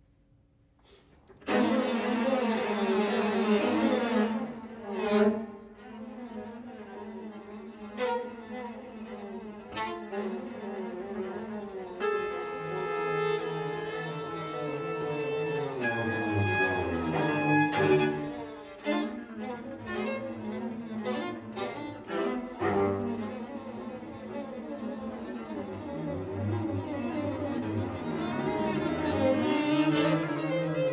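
A live string quartet of two violins, viola and cello playing contemporary concert music. It enters suddenly and loudly from silence about a second and a half in, then continues in dense bowed textures with sharp accented strokes. Around the middle come steady high held tones followed by sliding pitches.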